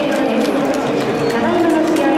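Stadium public-address announcer speaking Japanese in long, drawn-out syllables, announcing the game's result.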